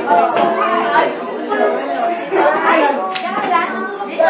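Several people, children among them, talking over one another in a room; one sharp click about three seconds in.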